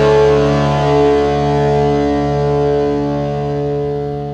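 The closing chord of a sped-up, pitched-up pop-punk song: a distorted electric guitar chord left ringing after the band stops, holding steady and slowly fading out.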